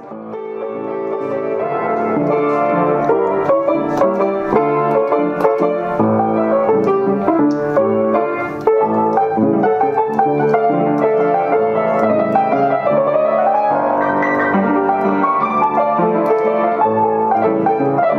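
Antique German Gebr. Perzina upright piano, freshly restored and tuned, played with a flowing run of notes. The sound fades in at the start, and a run climbs up the keyboard about two-thirds of the way through.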